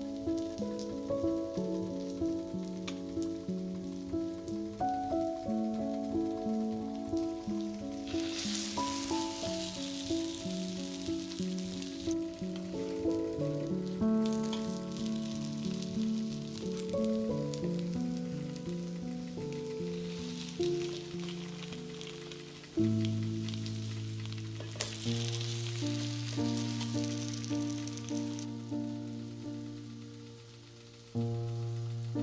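Background music throughout; from about eight seconds in, four stretches of sizzling of a few seconds each as battered zucchini slices fry in oil in a pan.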